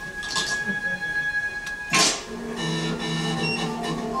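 Cartoon sound effects of an EEG machine being tinkered with and starting up, played over a room's speakers. A steady electronic tone is followed about two seconds in by a sudden loud noise, then a steady machine hum of several held tones.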